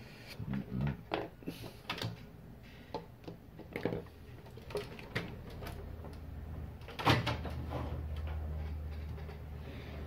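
Clicks and knocks of plastic and metal parts being handled on an opened-up stereo unit, with a low steady hum coming in about halfway through.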